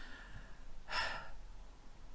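A woman's short audible breath, about a second in.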